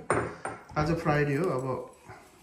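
A light clink right at the start, with a brief high ring after it, followed by a voice saying "bye".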